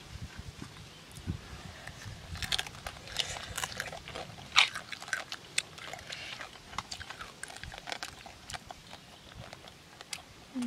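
Close-up eating sounds: chewing and slurping by hand, with irregular small clicks and knocks of shells and bowls, one sharp click near the middle.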